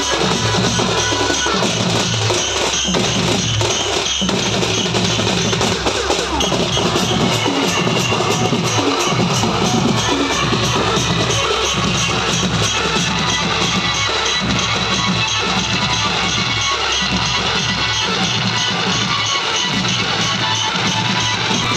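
Loud DJ music played through a large sound system, with a steady heavy beat and a repeating bass line.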